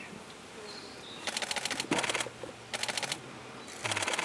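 Siberian chipmunk chewing food held in its forepaws: its teeth crunch in several short bursts of rapid clicking, the first about a second in.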